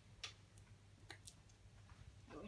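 Faint clicks of fingernails picking at the tape on a plastic gachapon capsule: four or five scattered ticks over near silence.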